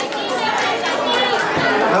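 Only speech: a man talking over a microphone in a large hall, with the chatter of other voices around him.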